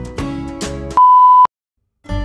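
Light plucked-string background music, cut off about a second in by a loud, steady, single-pitched electronic beep lasting about half a second, followed by silence.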